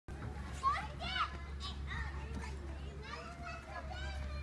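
Young children's high-pitched calls and squeals at play, a few short bursts of voice over a steady low hum.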